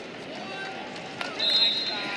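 Faint arena chatter, then a single high steady whistle tone starting about one and a half seconds in, about half a second long, as the match clock runs out.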